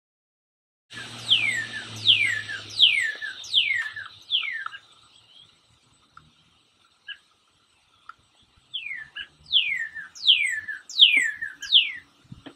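Male northern cardinal singing. It starts about a second in with a run of about five loud, clear whistles, each sliding down in pitch, then pauses for a few seconds with a couple of soft short notes, then repeats a second run of the same down-slurred whistles.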